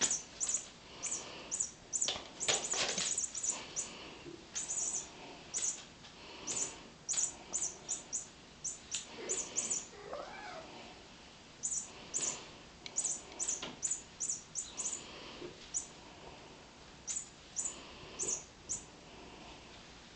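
A cat playing with small toys on carpet: quick, irregular rustling and flicking bursts as the toys are batted about, with one short rising-and-falling cat call about ten seconds in.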